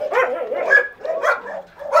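Caged shelter dogs barking and whining at the wire, a run of about four short, high calls.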